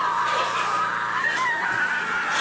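One long, high-pitched, wavering squeal in a cartoon character's voice, stepping up in pitch about halfway through.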